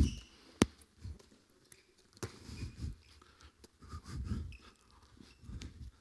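A few sharp knocks of a handball being passed, caught and bounced on an indoor court, the loudest about half a second in and another about two seconds in. Between them come faint short squeaks, typical of sports shoes on the hall floor, over low hall rumble.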